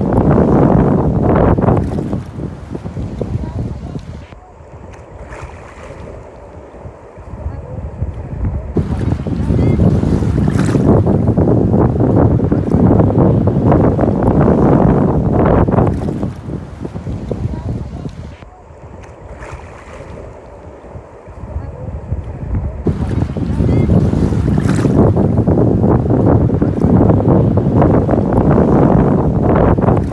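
Seawater washing in the shallows with wind on the microphone: a loud rushing noise that dies down twice for a few seconds and builds back up.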